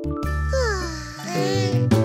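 Children's cartoon background music with a tinkling chime, and a sound that falls in pitch about half a second in.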